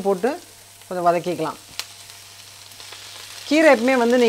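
Chopped red onion frying softly in oil in a nonstick pan, a faint steady sizzle, with one sharp click about two seconds in.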